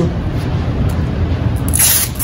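Hands rubbing and handling tape on a wooden silk-screen frame, with a short rasp near the end as a strip of tape is pulled off the roll.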